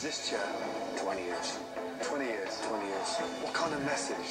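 Audio of a reality TV show playing: people talking over background music, quieter than the viewer's own voice.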